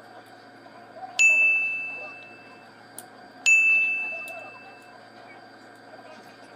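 Two clear bell-like dings, about two seconds apart, each ringing out and fading over about a second and a half.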